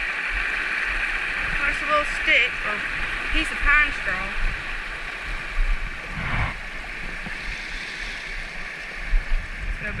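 Shallow mountain trout creek rushing over a rocky riffle: a steady rush of water, with a few short, high chirping sounds about two to four seconds in.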